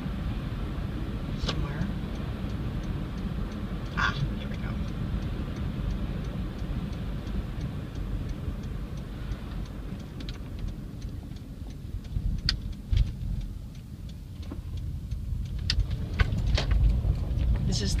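Steady low rumble of road and engine noise inside a moving car's cabin. In the second half, sharp clicks and knocks come through. The rumble grows louder in the last couple of seconds as the car rolls onto a rough roughed-in road.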